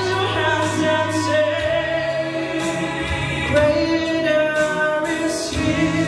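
A man singing a slow gospel song into a microphone over instrumental accompaniment, holding long notes. The bass note under him changes twice.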